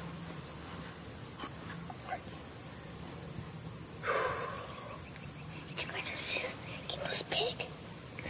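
Steady high-pitched insect drone, with low whispering voices about halfway in and again a little later.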